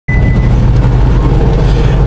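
Semi-truck cab noise while cruising at highway speed: a steady low engine drone with road and tyre noise, heard from inside the cab.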